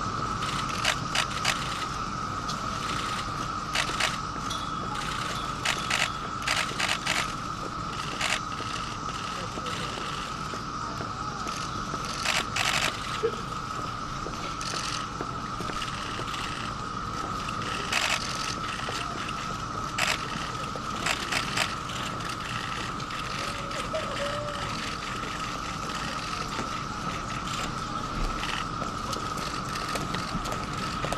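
Camera shutters firing in short bursts of quick clicks, scattered irregularly, over a steady high-pitched hum.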